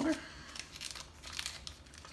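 Faint, irregular crinkling and crackling of a foil trading card pack wrapper being handled.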